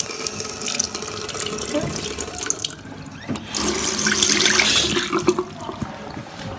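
Water running from a tap into a ceramic washbasin, easing off briefly about halfway through, then running harder for a couple of seconds before stopping near the end.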